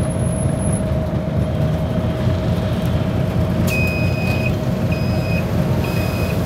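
Steady low engine and road rumble heard from inside a moving bus, with a thin steady whine. About two-thirds of the way through, a high electronic beeper sounds three times, the first beep the longest.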